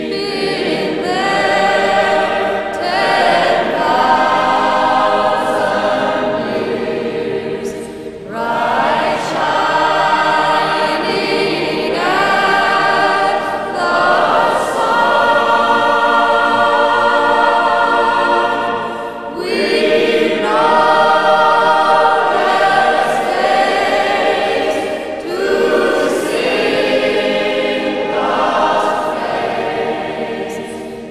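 Choral music: many voices singing together in long held phrases, with brief breaks between phrases about eight seconds in, near twenty seconds and again near twenty-five seconds.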